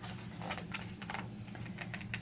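Paper rustles and light ticks of a picture book's page being turned and the book handled, a string of short sharp sounds, over a low steady hum.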